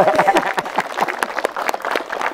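A crowd applauding, many hands clapping densely, with a few voices and laughter over the top near the start.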